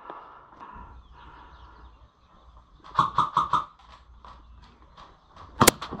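Airsoft rifle firing a quick string of four shots about three seconds in, then one sharp, loud crack shortly before the end.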